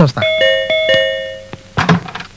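Electronic doorbell chime ringing: several bell-like notes struck in quick succession, ringing on and fading away over about a second and a half.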